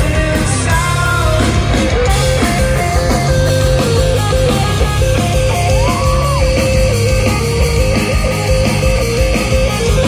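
Rock band playing live at full volume: electric guitars over bass and drums in an instrumental passage, with a high guitar note repeated throughout.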